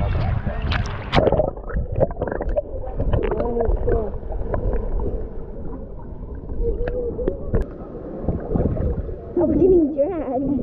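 Muffled underwater sound from an action camera submerged in shallow sea water: low rumbling and gurgling with scattered clicks and faint, dulled voices. Near the end the camera breaks the surface and the sound turns clear again with a voice.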